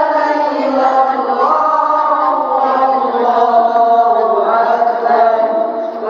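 A woman reciting the Qur'an in a sustained melodic chant (tilawah), one long phrase whose pitch glides up and down over held notes, with a brief break for breath near the end.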